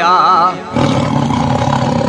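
A held sung note with wavering pitch, then, under a second in, a long rough roar laid into the song's mix as a sound effect.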